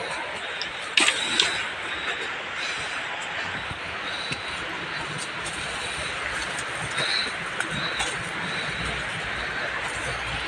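Footsteps on a dry, leaf-strewn forest path, with a sharp knock about a second in and lighter ticks later, over a steady hiss of background noise.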